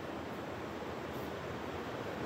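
Steady hiss of heavy rain, even and unbroken, with no distinct knocks or tones.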